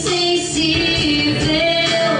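A song sung by women's voices in long held notes that slide between pitches, over instrumental accompaniment.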